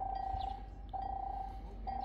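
Railway level-crossing warning bell ringing: a single clear tone sounding three times, about once a second, each stroke fading out, signalling that a train is approaching.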